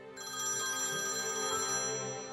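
A phone ringtone, a bright chiming ring that starts suddenly just after the beginning and keeps going, over soft background music.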